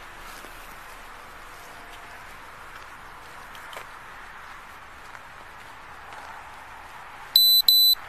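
Two short, loud, high electronic beeps in quick succession near the end, over a steady background hiss.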